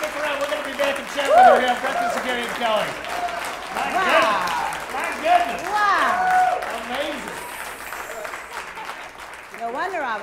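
Audience applauding with voices talking over the clapping. The applause thins out toward the end.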